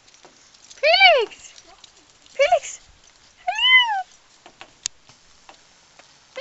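A cat meowing three times, each call rising and then falling in pitch.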